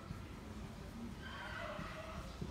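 A squeak from writing or drawing on a board, starting a little past a second in.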